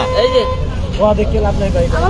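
People talking over a steady low rumble, with a steady hum tone that stops about a quarter of the way in.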